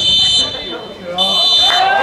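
Referee's whistle blown twice, a short blast then a longer one of just under a second, each a shrill, steady tone with no trill.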